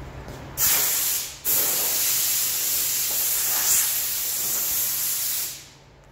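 Pressurised spray hissing in two bursts: a short one of under a second, then a longer one of about four seconds that stops near the end.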